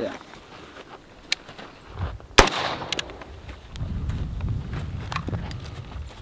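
A single 5.56 mm rifle shot firing a 55-grain round, about two and a half seconds in, with a short echo trailing off after it.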